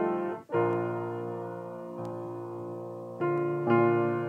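Piano playing slow, sustained chords. The chord changes about half a second in, then twice more near the end.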